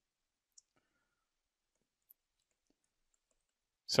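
Near silence broken by a couple of faint clicks from a stylus tapping a tablet screen while handwriting. A voice starts speaking right at the end.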